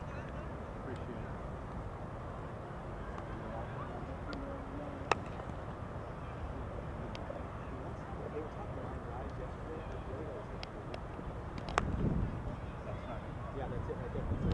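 Outdoor ballfield ambience with faint, indistinct voices in the distance. A single sharp crack rings out about five seconds in, and another comes near twelve seconds, followed by a brief low thump.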